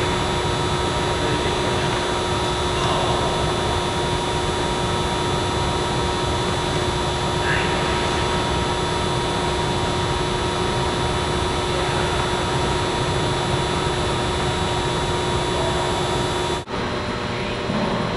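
Loud, steady machine hum and rush of air with several steady whining tones, like a large ventilation blower running. It drops out suddenly near the end, and a quieter, different steady background follows.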